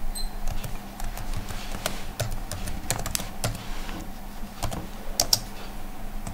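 Computer keyboard typing: a run of irregularly spaced keystrokes as an email is typed out.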